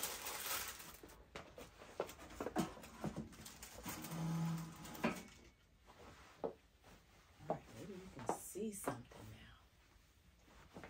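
Clothes and packaging rustling as a chair and boxes are shifted by hand, with a few short knocks and scrapes.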